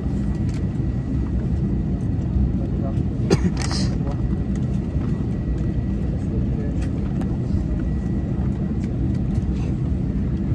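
Steady low rumble of an Airbus A319's cabin on the ground before departure, with a faint steady high tone, a few light clicks and a brief hiss about three and a half seconds in.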